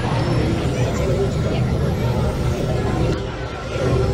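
Outdoor crowd ambience: people talking in the background over a steady low rumble.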